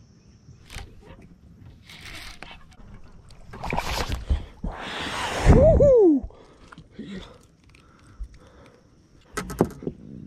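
A hooked largemouth bass thrashing and splashing at the boat's side as it is fought in and lifted out of the water, with knocks and handling noise from the rod and boat; the loudest splashing comes about five seconds in. A man's drawn-out, falling exclamation follows right after it.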